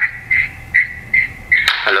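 Telephone line on the phone-in call giving a string of short, evenly spaced high beeps, about two or three a second. The caller's voice comes through near the end.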